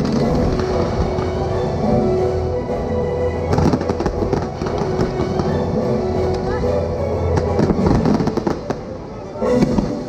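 Fireworks shells bursting and crackling in quick clusters, the densest a little after three seconds in and again near eight seconds, over loud orchestral show music.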